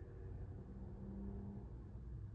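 Quiet room tone: a faint, steady low rumble, with a faint low hum for about a second in the middle.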